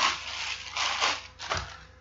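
Clear plastic wrapping crinkling and rustling in bursts as a packaged wax warmer is unwrapped, ending in a short low thump about a second and a half in.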